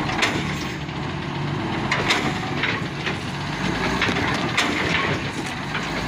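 A heavy truck's diesel engine idling steadily, with a handful of short sharp knocks over it.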